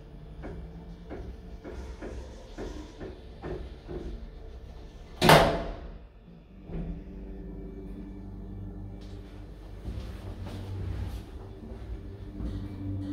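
Hydraulic lift's automatic sliding doors: light regular ticks a little under two a second, then the doors shut with one loud bang about five seconds in. After that a steady low hum as the hydraulic lift starts moving.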